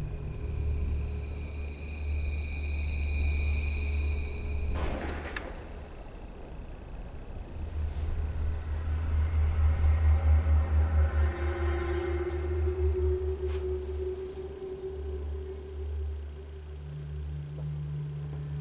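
Short film's soundtrack: a deep rumbling drone under held high tones, a single hit about five seconds in, then a layer of sustained tones that swells and fades in the middle.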